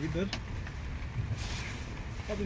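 Nylon tent fabric rustling briefly as it is handled and pulled into place, about halfway through, over a steady low rumble.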